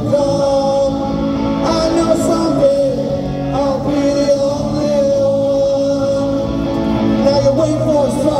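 A solo electric guitar strummed through an amplifier while a man sings a punk rock song into a microphone, with long held notes.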